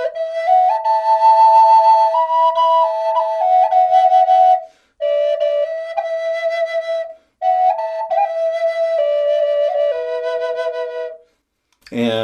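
Brazilian rosewood double Native American flute in mid B played as a drone: the bottom flute, with its lowest two holes uncovered, holds one steady note while the top flute plays a slow melody stepping above and later below it. It comes in three phrases with short pauses between them.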